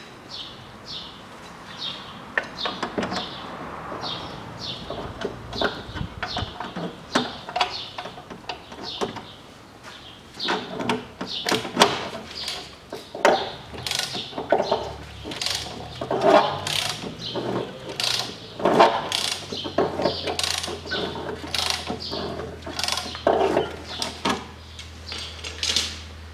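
Clicks and metallic knocks of hand tools working on a VAZ-2110 1.5 16-valve engine, as the engine is turned over by hand to check for compression. Small birds chirp in the first seconds, and a low steady hum comes in about halfway.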